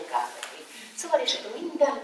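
A woman speaking in short phrases, lecturing.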